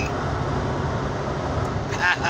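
Steady road and engine rumble heard from inside a moving vehicle's cabin.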